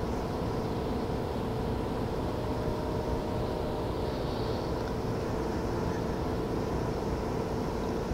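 Steady background hum and low rumble, with a few faint constant tones, on a small home cassette recording between spoken sentences.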